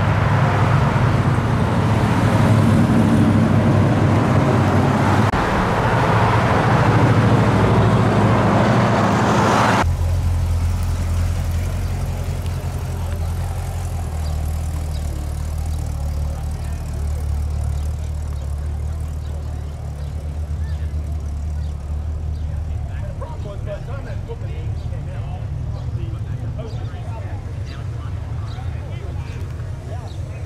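Cars driving past on a busy road, engine and tyre noise together, for about the first ten seconds. After a sudden cut, a steady low engine hum, like a car idling close by, runs to the end.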